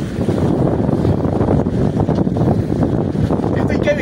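Wind buffeting the microphone on an open boat at sea: a loud, uneven rumble with the rush of the sea behind it.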